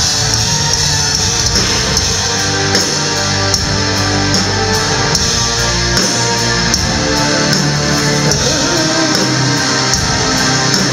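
Live gothic metal band playing loud, guitar-heavy music, heard from within the audience.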